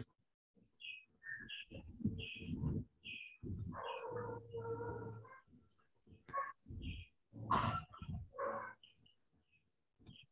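Birds chirping: short, high calls repeating about every half second, with a few louder, lower calls mixed in.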